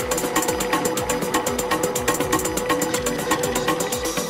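Electronic dance music played live from a laptop and hardware controllers: a steady deep kick drum about twice a second under fast, even hi-hats and a held mid-pitched drone.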